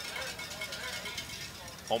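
Faint stadium crowd ambience: a low, even murmur of distant voices from the stands and sideline, with no sharp sounds, before a commentator's voice comes in at the very end.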